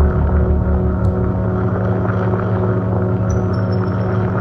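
Live electronic synthesizer music: a low drone of steady held tones, with a pulsing bass that fades about a second in and thin high tones entering near the end.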